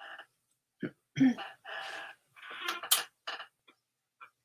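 A woman clears her throat about a second in. This is followed by a couple of seconds of rustling and a sharp click, which fits a clothes hanger being hooked onto a rail.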